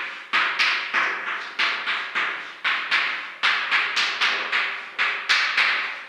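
Chalk writing on a blackboard: a quick run of sharp taps and short scratches, about two or three a second, as each letter is written.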